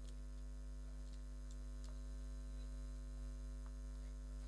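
Steady low electrical mains hum, with a few faint ticks.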